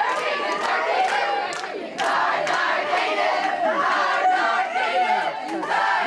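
A crowd of girls' and young women's voices singing and shouting together, with rhythmic clapping about three claps a second.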